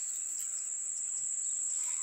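Insects trilling: one continuous, steady, high-pitched buzz that holds without a break.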